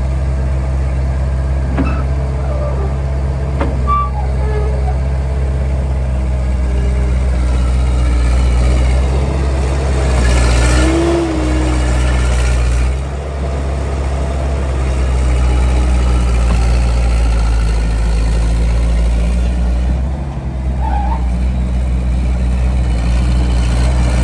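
Terex TSR-50 skid steer's engine running while the machine drives over dirt, its note getting louder for a few seconds near the middle, then dipping briefly twice as the throttle eases.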